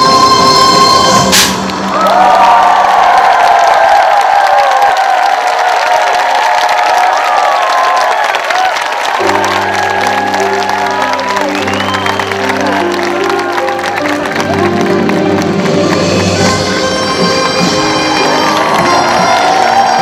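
Korean folk performance music ends on a held note and a sharp final hit about a second in. An audience then cheers and applauds. About nine seconds in, recorded music with sustained low chords starts under the cheering.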